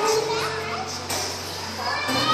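Children's voices chattering in a large hall during a break in their singing, with a low steady note from the backing music underneath. A last sung note fades out in the first half second.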